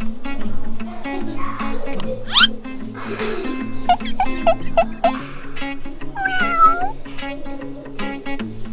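Background music with a steady plucked beat, over which a cat meows with a wavering call about six seconds in. A quick rising whistle-like glide comes about two seconds in, and four short notes come a little before five seconds.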